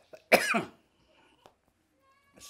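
A man coughs once into his fist, a single short cough about a third of a second in.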